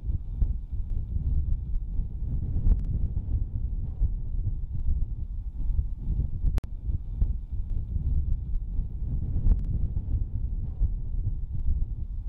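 Wind buffeting the microphone: a gusty, fluctuating low rumble. A few sharp ticks stand out, at about three, six and a half and nine and a half seconds in.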